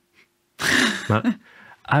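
A short, breathy burst of laughter that starts sharply about half a second in and breaks off in a couple of quick pulses.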